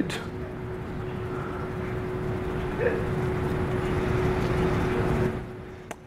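A steady rushing background noise with a faint steady hum in it, fading away shortly before the end.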